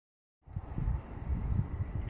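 Low, uneven rumble of wind buffeting the microphone, starting about half a second in.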